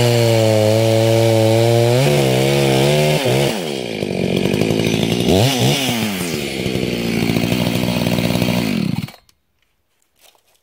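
Echo CS-590 Timberwolf two-stroke chainsaw with its muffler baffle removed (muffler mod), cutting through a stump under load at a steady high pitch. After about three seconds it comes out of the wood and the engine note swings up and down. The engine stops abruptly about nine seconds in.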